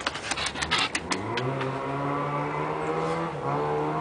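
A motor vehicle engine running with a low, steady drone: it rises in pitch about a second in, then holds for about three seconds. A few sharp clicks come before it.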